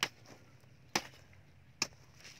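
A steel hoe blade chopping into hard, dry clay soil to dig a hole: three sharp strikes about a second apart.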